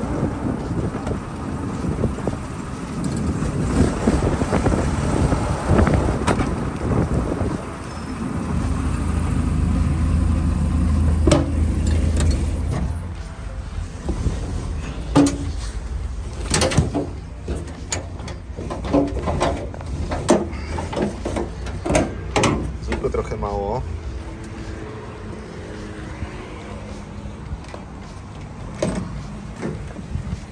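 Vehicle engines running with a low rumble and a steady low hum, a heavy container lorry driving past, followed by a run of sharp knocks and clatters.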